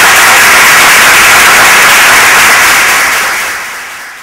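Audience applauding: dense, even clapping that starts to die away near the end.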